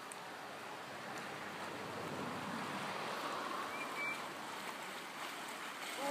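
Steady splashing and rushing of water as a dog swims through a creek. A brief faint high whistle sounds about four seconds in.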